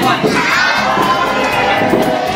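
Party crowd of children and adults shouting and cheering together, with high children's voices loudest about half a second in.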